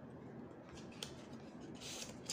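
Faint rustling and crinkling of a red paper envelope being opened by hand and a banknote being slid out of it. There is a small click about a second in, and the rustling grows louder near the end as the note comes out.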